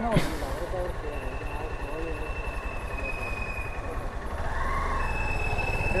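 Single-cylinder KTM Duke 390 motorcycle engine idling with a steady low rumble. The engine sound grows louder a little past four seconds in.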